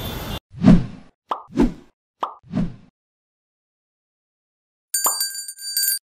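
Edited-in outro sound effects: three short pop effects about a second apart, then after a pause of digital silence a bright ringing chime with several steady high tones near the end, the kind of notification-bell sound that goes with a subscribe animation.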